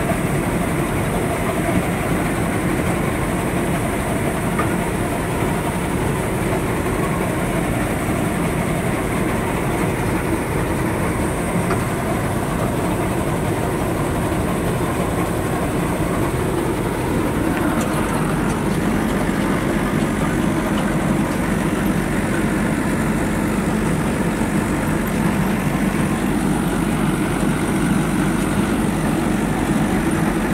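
Tractor-mounted combine harvester running steadily while its unloading auger empties paddy into a trolley: continuous engine and rattling machinery noise, the engine note shifting slightly a little past the middle.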